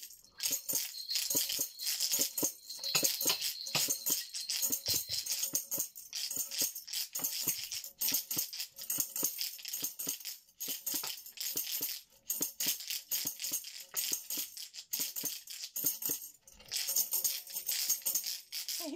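Small wooden tambourine shaken unevenly, its metal jingles rattling in many quick strokes.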